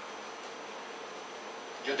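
Quiet room tone: a steady faint hiss with a thin high-pitched whine, until a man's voice starts right at the end.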